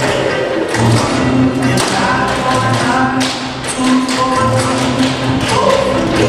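Tap shoes striking a wooden stage floor, a group of dancers tapping out quick rhythms over loud backing music with a steady bass line.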